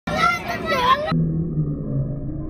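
Children's high-pitched voices shrieking and calling out on a fairground ride. About a second in, the sound cuts off suddenly to a muffled, steady low drone.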